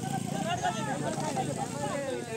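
Indistinct voices of several people talking over one another.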